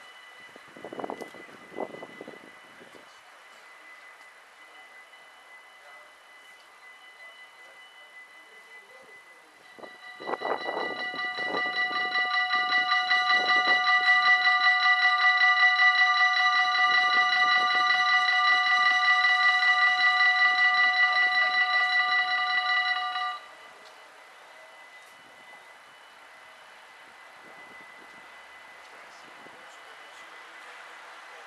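Dutch level-crossing warning bells ringing rapidly, with a bright, many-toned ring that starts about ten seconds in, swells, holds steady and then stops abruptly some thirteen seconds later. The bells warn of an approaching train while the barriers come down and fall silent once the barriers are closed.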